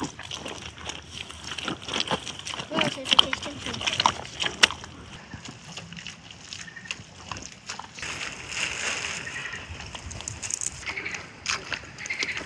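Wet clay mud squelching and slopping under bare feet and rubber boots as it is trodden, in irregular wet slaps and sucks. The clay is being worked together with straw into a building mix.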